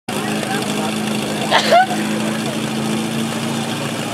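Portable fire pump's small engine idling steadily on its platform, a constant hum, with a voice calling out briefly about one and a half seconds in.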